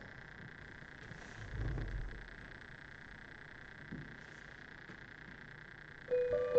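Quiet room tone with a steady faint hiss, broken by one soft, low thump about a second and a half in.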